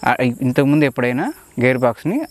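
Crickets chirping in short, high, repeating pulses behind a man's continuous talking.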